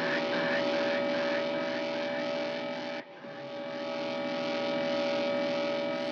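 Quiet intro of an electronic hip-hop track: a held, droning synth chord with a faint repeating pulse, briefly dropping out about three seconds in.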